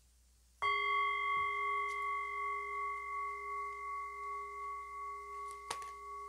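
A singing bowl struck once about half a second in, then ringing on with a slowly wavering, pulsing tone that fades only a little. A couple of light clicks come near the end.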